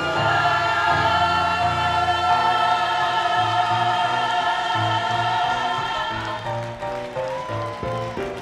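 A lead singer and backing choir sing live with a band, holding one long chord for about six seconds before breaking into shorter notes, with a low bass beat pulsing underneath from about halfway in.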